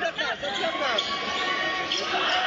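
A basketball bouncing on the court during play, amid the voices and shouts of a crowd in a gym.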